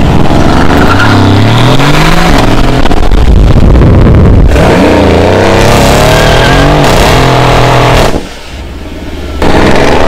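Mercedes-AMG C63 S twin-turbo V8 revving loudly, its pitch climbing and falling several times. About eight seconds in the sound drops away sharply for a little over a second, then comes back at full level.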